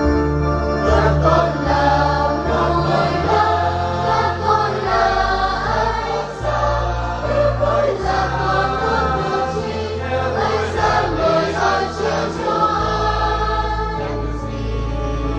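Mixed parish choir singing a Vietnamese Catholic hymn in several parts over sustained organ accompaniment. The voices come in about a second in, over held bass notes.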